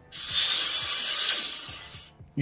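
Nubia Red Magic 6R's Game Space launch sound effect, played from the phone's speaker as game mode switches on: a hissing, mechanical-sounding whoosh about a second and a half long that fades out near the end.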